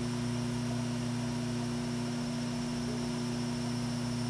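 A steady low hum with a constant hiss, unchanging throughout.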